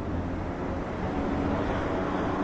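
Steady low rumble of outdoor street background noise, with no distinct single event.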